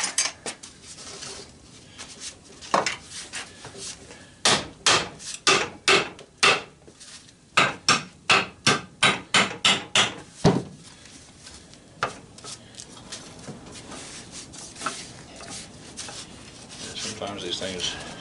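Hammer blows on the cast aluminum end bell of an electric motor, knocking it off the housing after the through-bolts are pulled. Sharp metallic strikes come in quick runs of about two a second through the middle, then fewer, quieter knocks toward the end.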